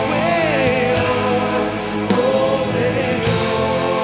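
A man singing a gospel song into a microphone, holding long, wavering notes over instrumental accompaniment.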